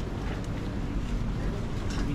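Steady low rumble of wind noise on the microphone over a faint murmur of voices in a market street.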